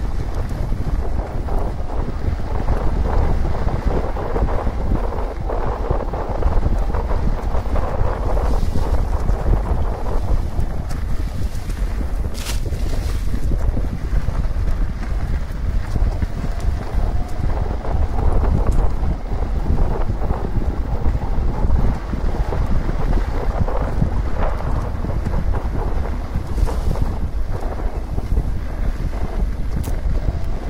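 Steady wind buffeting the camera microphone at riding speed, over the rumble of mountain-bike tyres rolling on a dirt road. A single sharp click stands out partway through.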